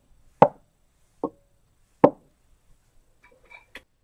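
Three sharp knocks about 0.8 s apart as a small box target is set down and moved on a metal test plate, the second with a short ring, then a few faint ticks and a click near the end.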